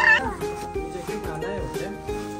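A toddler's short, high-pitched excited squeal right at the start, over background music with a steady beat; a few softer vocal sounds follow in the middle.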